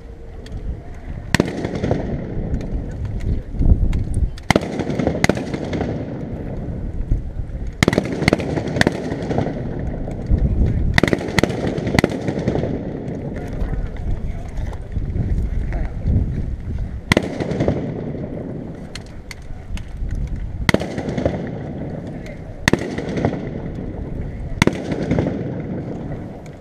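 A dozen or so gunshots from a re-enactor squad's rifles, fired at irregular intervals. Each sharp crack trails off in an echo from the fort's stone walls, over a low rumble of wind on the microphone.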